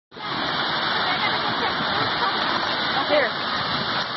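Steady rush of water pouring down and swirling around a bowl water slide, with voices in the background and a brief louder voice a little after three seconds in.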